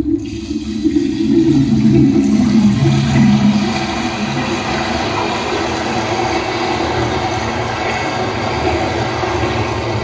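Sound-design soundtrack of a projection artwork: a loud water-like rushing noise that comes in suddenly, is strongest for the first three seconds or so, then settles into a steady wash.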